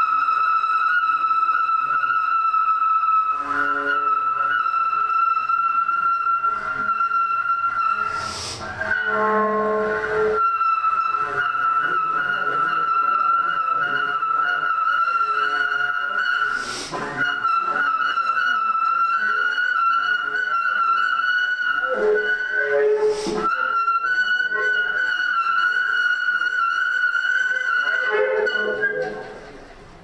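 Saxophone holding one long high note rich in overtones, broken three times by short noisy breath-like bursts with a few lower notes, and dying away near the end.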